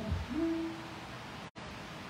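A woman's voice drawing out a long, low, wordless note into a microphone, rising at first and then held. The sound cuts out for an instant about a second and a half in.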